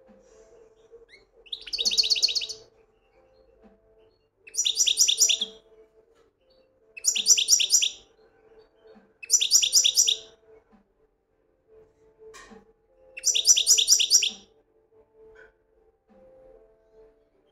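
Caged European goldfinch singing: five short bursts of fast, repeated high twittering notes, each about a second long and a couple of seconds apart.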